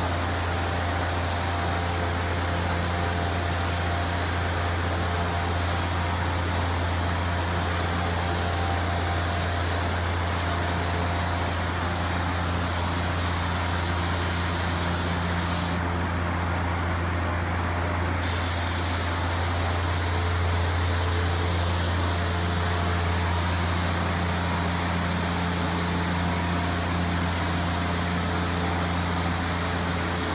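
Compressed-air spray gun with a siphon cup spraying tinted shading colour, a steady hiss of air and atomised finish that stops for about two seconds midway when the trigger is let off, then resumes. A steady low hum runs underneath.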